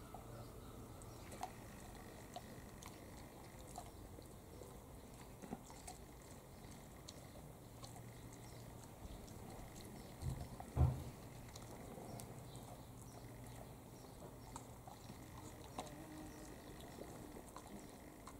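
Dog gnawing and chewing a meaty bone, faint scattered crunching clicks. A brief low thump, the loudest sound, comes about eleven seconds in.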